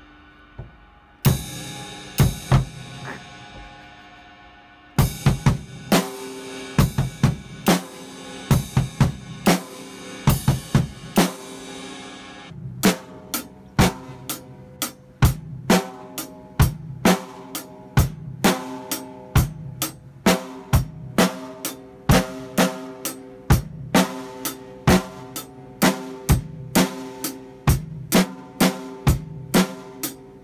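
Acoustic drum kit played in a simple, steady practice beat of bass drum, snare and cymbal strokes, with a short break about four seconds in. Around thirteen seconds the sound changes abruptly as the recording cuts to another take, and the beat runs on evenly.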